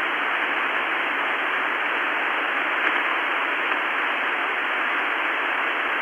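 Steady, even hiss of an open radio voice channel between transmissions, thin like a telephone line.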